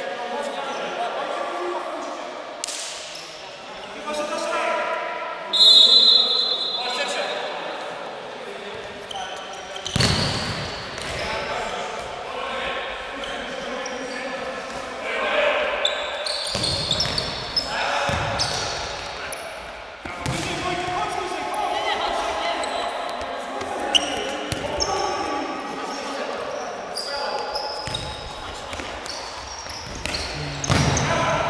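Futsal ball being kicked and bouncing on a sports-hall floor, several sharp kicks ringing in the large hall, with players shouting throughout. A short shrill referee's whistle blows about six seconds in.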